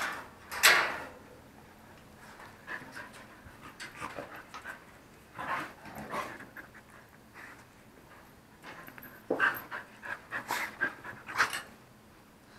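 Several young dogs panting in short, irregular breathy bursts, with a louder sharp burst about a second in and a busier run of panting near the end.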